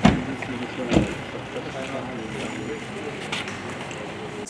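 Several men's voices talking and greeting each other in a low murmur, with two dull thumps, one at the start and one about a second in.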